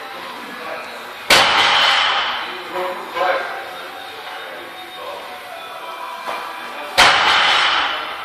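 Two loud sharp bangs, about six seconds apart, each ringing out for about a second in a large weight room, typical of metal gym equipment being knocked or set down, over faint background voices.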